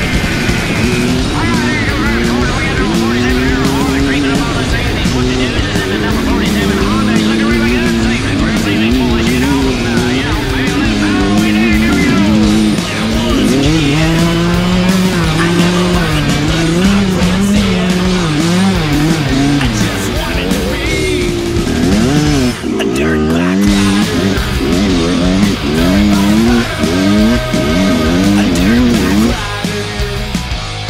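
Kawasaki KX100 two-stroke single-cylinder engine revving as the dirt bike is ridden along a trail, its pitch rising and falling again and again with throttle and gear changes. There is a brief drop in level about two-thirds of the way through.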